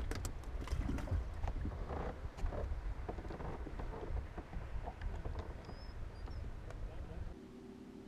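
Low wind rumble on the microphone with scattered light knocks and clicks. The rumble cuts off suddenly near the end.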